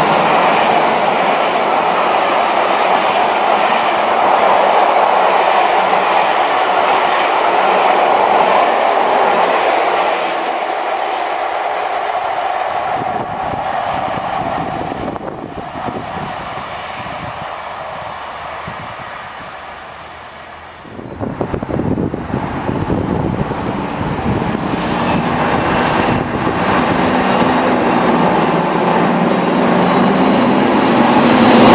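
Passenger coaches of a diesel-hauled train rolling past close by, with wheel clatter on the rails, the sound fading away over the next several seconds. From about twenty seconds in, wind buffets the microphone while the Class 55 Deltic locomotive D9009 approaches, its engine growing louder towards the end.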